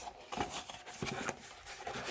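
Faint scuffs and light taps of a small cardboard hand-cream box being handled and opened, a few short scattered clicks.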